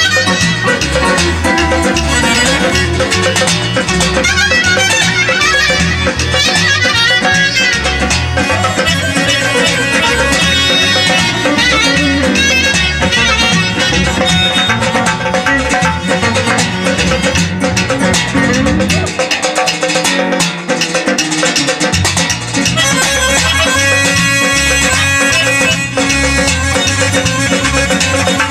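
Azerbaijani dance tune played on clarinet over a steady frame-drum (qaval) beat. The drum drops out for about two seconds past the middle, then comes back in.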